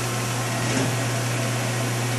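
CNC machining center humming steadily: a low hum with an even hiss above it, with no knocks or cutting sounds.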